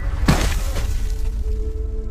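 A single sharp crash about a third of a second in, like something breaking, over a film score with a low rumble and a long held note coming in near the end.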